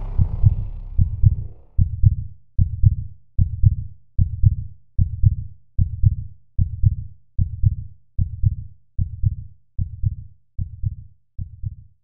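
Background music fades out over the first two seconds, leaving a deep, steady thump repeating about every 0.8 seconds like a slow heartbeat, growing slightly quieter toward the end.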